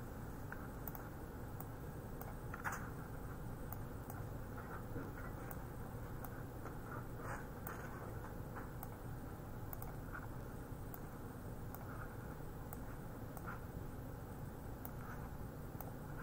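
Faint, scattered clicks of a computer mouse, a dozen or so spread unevenly, over a low steady hum of room tone.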